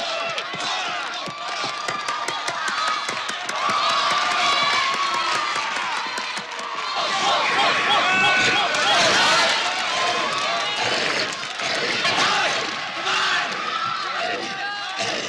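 Crowd cheering and shouting at a boxing match, with repeated thuds of punches landing. The crowd grows louder a few seconds in.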